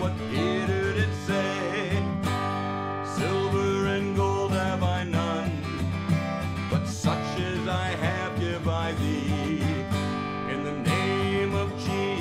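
A man singing a children's song while strumming chords on an acoustic guitar.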